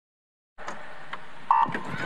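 Electronic starting beep of a swimming race: one short, sharp tone about a second and a half in, over a steady hum of arena ambience that begins after half a second of silence.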